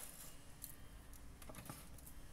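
Hand seamer folding up the edge of a thin reflective metal sheet: four faint, sharp clicks, one near the start, one about two-thirds of a second in and two close together about a second and a half in.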